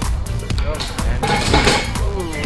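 Electronic dance music with a steady beat. Over it, about a second and a half in, a wooden-stick model bridge cracks and clatters as it breaks under load.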